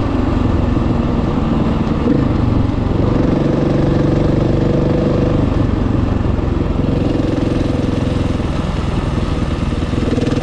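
KTM 450 EXC's single-cylinder four-stroke engine running as the bike rides along at road speed, its note rising and falling a few times with the throttle.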